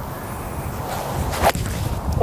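A four iron swung at a golf ball on the tee: a short swish of the club, then one sharp crack of the clubface striking the ball about a second and a half in. The strike sounds good for a well-struck shot.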